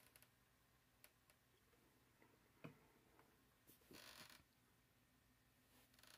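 Near silence: room tone with a few faint, short clicks and a brief soft rustle.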